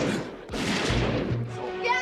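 Film soundtrack: music under loud, noisy bursts of sound effects that last about a second each, twice, with a voice beginning near the end.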